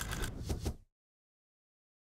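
A short clicky sound effect, under a second long, accompanying an animated title card, then cut off to dead digital silence.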